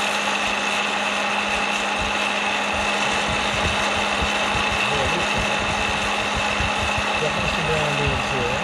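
A hot-air popcorn popper's fan and heater running steadily as a roaster, with a constant whine, while green coffee beans swirl in the hot air partway through the roast.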